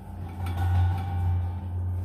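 A low, steady hum that swells louder about half a second in and eases off near the end.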